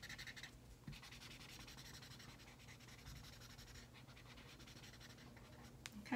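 Felt-tip marker colouring on paper: faint, quick back-and-forth scribbling strokes, with a light tick near the end.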